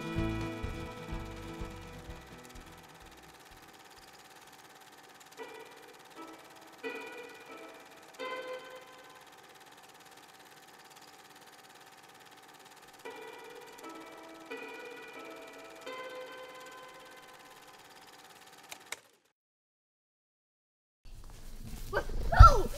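Soft instrumental film score: held chords fade away, then sparse single notes sound one at a time with long decays. The music cuts to dead silence for about two seconds near the end.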